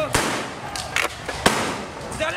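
Tear gas rounds being fired by police: three sharp bangs in under two seconds.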